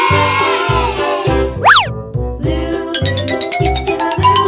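Background music for children with a steady beat. About halfway through, a quick sound effect sweeps sharply up and down in pitch and the beat drops out for a moment. Then a run of short notes climbs steadily in pitch toward the end.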